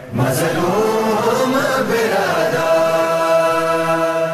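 Voices chanting a noha, a Shia lament, closing on one long held note that starts to fade at the end. A single sharp slap, in the rhythm of the chest-beating before it, comes just after the start.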